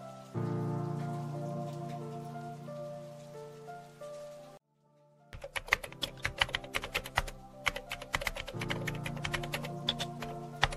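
Soft background music of long held notes, which breaks off into a short silence just before the middle. Then rapid, irregular computer-keyboard typing clicks, a sound effect for on-screen text being typed, with the music coming back under them near the end.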